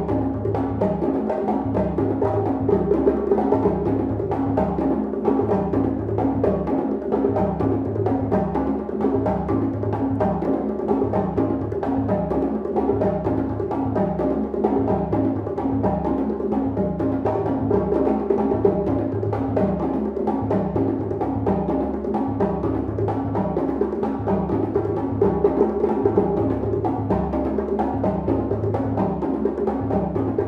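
African drum ensemble playing a steady, repeating rhythm on hand drums, with a tall drum also struck with a stick.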